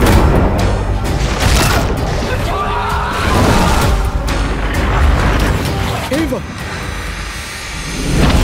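Trailer music and sound design: a deep boom hits at the start, then loud, dense music with a heavy low rumble underneath, easing off slightly in the last couple of seconds.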